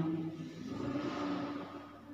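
Ballpoint pen writing on notebook paper: a soft scratching that fades away near the end.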